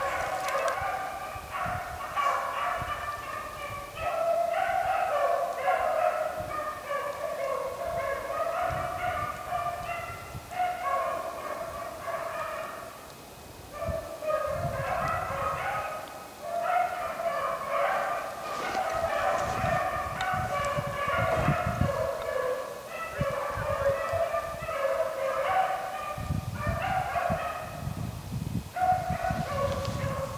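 Pack of beagles baying in chorus, steady overlapping calls as they run a rabbit's trail, with a short lull about midway.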